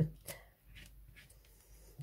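Faint rustling and a few light taps as paper and craft tools are handled on a tabletop.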